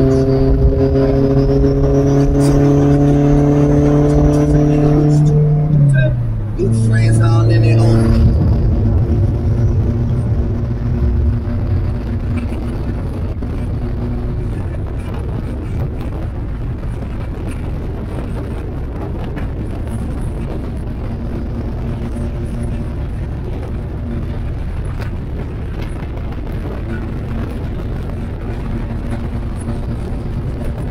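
Car engine and exhaust pulling hard, pitch rising slightly, then dropping at a gear change about five or six seconds in and pulling again briefly in the next gear. After about eight seconds the engine fades into steady road and wind noise at highway speed.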